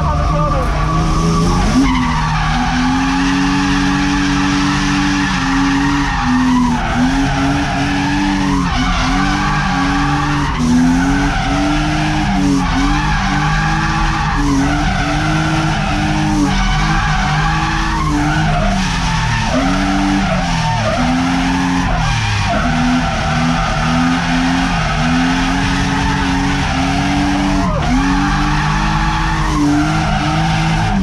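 BMW E36 328i's M52B28 straight-six, heard from inside the cabin, revving up and dropping back over and over while the car is drifted, with tyres skidding and squealing.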